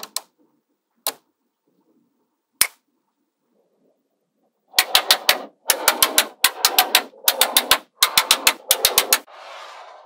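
Small magnetic balls clicking as they snap together: a few single sharp clicks in the first three seconds, then from about five seconds in, rapid runs of clacking as many balls are handled. A short, softer rushing sound follows near the end.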